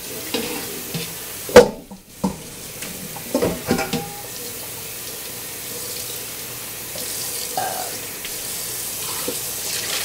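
Kitchen tap running into a sink while dishes are washed by hand. A metal pot knocks and clatters several times in the first four seconds, loudest about one and a half seconds in, and then the water runs on steadily.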